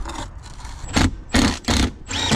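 Plastic insert scraping and rubbing against a metal fuel-tank bracket as it is pushed into place by hand, a few short scrapes from about a second in.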